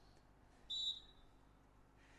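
Referee's whistle: one short, steady blast about two-thirds of a second in, the signal that authorises the serve.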